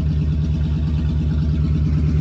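Open-headered 5.7 L Vortec 350 V8 of a 1997 Chevy C/K 2500 pickup running steadily shortly after a cold start, with a loud, fast, even exhaust pulse.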